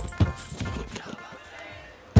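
Film soundtrack: a few short percussive knocks about a quarter second in, then a low background bed of music and crowd murmur that fades away.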